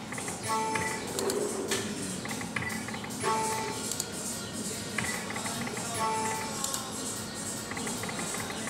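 Electronic fruit slot machine playing short beeping tone chimes every second or so as its reels spin and stop, with music playing underneath.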